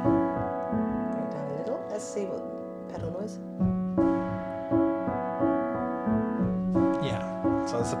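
Sampled upright piano from the E Instruments Pure Upright iOS app, played from a keyboard controller: a slow, repeating pattern of sustained chords. The app's simulated key and pedal mechanism noises are turned up, adding a clunk to the notes.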